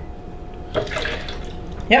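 Ladleful of milk poured into a plastic blender jar: a soft pouring splash about a second in.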